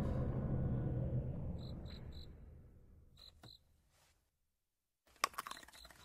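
Dark, low soundtrack music fading away over the first three seconds, with crickets chirping in short high pulses in twos and threes. It then falls to near silence, with a few faint clicks near the end.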